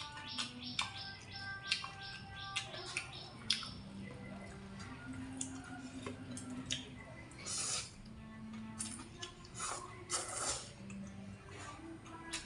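Eating sounds: rice vermicelli noodles slurped and chewed, with small sharp clicks, over soft background music. Louder slurping bursts come about halfway through and again near the end.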